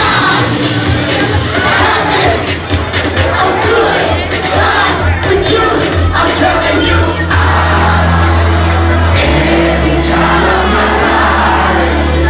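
Loud electronic dance music with deep held bass notes that shift pitch twice in the second half. A packed crowd shouts and cheers over it.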